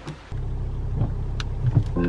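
Low steady rumble of a car's engine running, heard from inside the cabin; it comes in suddenly about a third of a second in. A few light clicks sound over it.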